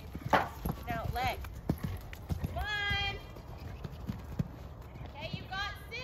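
Horse cantering on sand arena footing, with dull, irregular hoofbeats and one heavy thud about a third of a second in as it lands over a jump.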